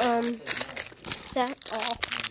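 Plastic snack wrappers crinkling and rustling as a hand rummages in a backpack's front pocket.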